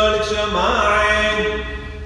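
A man chanting a Syriac Orthodox liturgical hymn, holding a long note that turns in a short rising ornament about half a second in. The voice drops away briefly at the very end before the next phrase.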